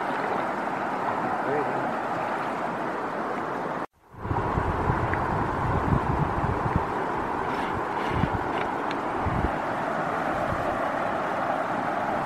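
River water rushing over a small weir in a steady hiss. Just before four seconds in the sound cuts out for a moment, then the rushing resumes with low wind buffeting on the microphone.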